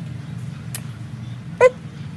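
A single short yelp that drops in pitch, near the end, over a steady low hum, with a faint click about a second before it.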